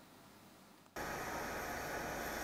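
About a second of near silence, then steady machinery noise with a faint hum starts suddenly and holds even: the ambient sound of a rice warehouse with its machines running.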